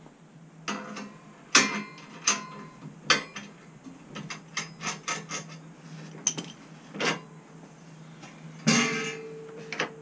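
Steel tow-bar rack and its clamshell clamp being undone and lifted off the tow bar: a series of metal knocks, clanks and clicks with short ringing, a quick run of clicks in the middle and a louder clatter near the end.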